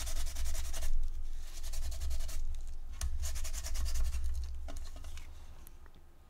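Damp paper towel scrubbed quickly back and forth over a crackle-painted craft-board disc, with a short pause about halfway through. It is wiping back the Distress crayon rubbed into the crackle paint so the silver shine shows through.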